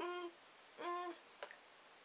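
A woman humming two short notes on the same pitch, about a second apart, followed by a faint click.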